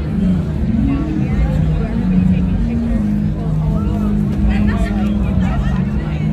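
Live amplified music heard from among a theatre audience: a low line of held notes stepping from pitch to pitch, with voices and crowd chatter over it.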